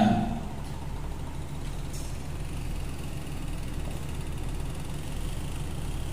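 A steady low hum with faint background noise, in a pause between phrases of speech; the tail of the speaker's voice fades out just at the start.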